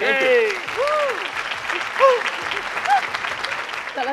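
Audience applauding, with a few short voices calling out over the clapping.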